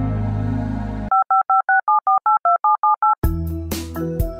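Sustained synthesizer music chord that cuts off about a second in, then a quick run of about a dozen touch-tone (DTMF) telephone keypad beeps, as when a phone number is dialed. Keyboard music with a beat starts near the end.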